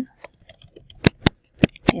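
Typing on a computer keyboard: a quick, uneven run of about eight key clicks as a short word is typed, a few strikes louder than the rest.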